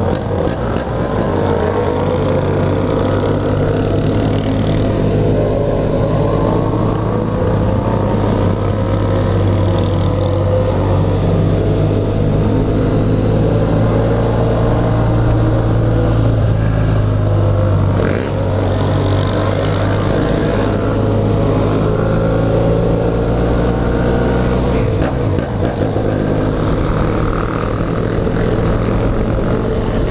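BMW F800GS parallel-twin motorcycle engine heard through its open exhaust, cruising at low, fairly steady revs, with the note rising as it accelerates near the end.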